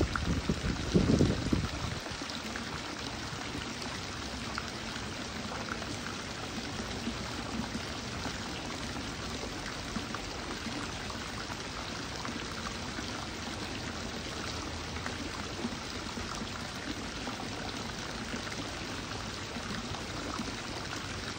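Small spout of water pouring steadily over a stone ledge and splashing into a shallow stream. A low rumble sounds during the first two seconds, then only the steady pouring remains.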